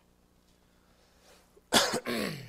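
A man coughs once sharply to clear his throat near the end, after a stretch of quiet room tone.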